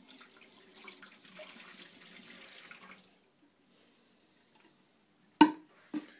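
Water poured from a clear plastic pitcher into a stainless steel sink, splashing for about three seconds and then stopping. About five seconds in, a single sharp knock.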